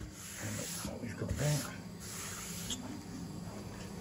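Sawdust being cleared off a freshly CNC-routed melamine-faced board, heard as three hissing, swishing bursts.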